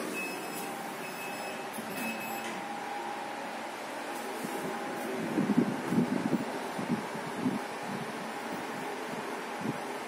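Fujitec lift car: a string of short high beeps over the first two and a half seconds, then a steady hum as the car travels upward. A cluster of low thuds comes around the middle.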